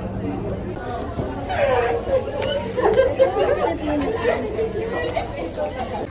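Indistinct voices talking and chattering. A steady low hum stops about a second in.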